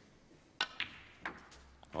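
Snooker shot: the cue tip clicks against the cue ball, and a moment later the cue ball clicks into a red. A few softer knocks follow, then a short low rumble as the red is potted.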